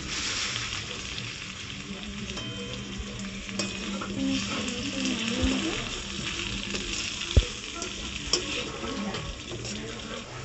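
Potato chunks and raw jackfruit pieces sizzling in hot oil in a steel kadai while a metal spatula stirs and turns them. There is a steady frying hiss, with a sharp knock of spatula on pan about seven seconds in and a lighter one a second later.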